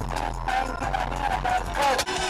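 Background music: a melody line that wavers up and down over a steady low bass and a faint regular beat.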